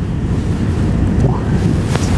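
Steady low rumble of room and microphone noise, with a brief click near the end.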